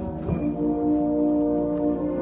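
High school concert band of woodwinds and brass playing long held chords, moving to a new chord about half a second in.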